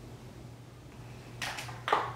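Quiet room tone with a faint steady low hum. Two short noises break in during the second half, the first about one and a half seconds in and the second just before the end.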